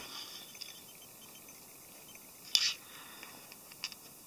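A small plastic scale model handled on a wooden floor: one sharp click about two and a half seconds in, then a couple of faint ticks near the end.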